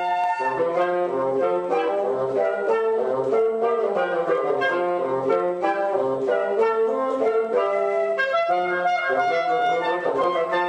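Live wind chamber music: flute, clarinet and bassoon playing together, with a low line moving in short repeated notes under quicker, changing notes above.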